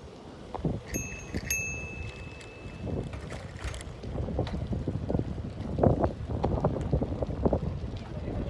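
Wind buffeting the microphone of a bicycle being ridden, in irregular low gusts that grow stronger in the second half. About a second in, a high steady ringing tone sounds for about two seconds.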